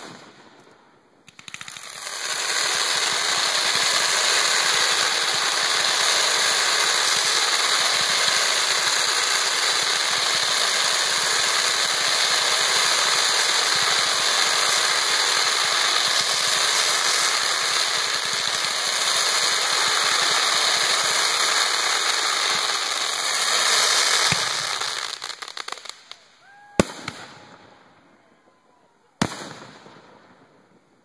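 Fireworks: one sharp bang at the start, then a ground-level shower of sparks shooting up with a dense, steady hiss for over twenty seconds that fades out, and two more sharp bangs near the end.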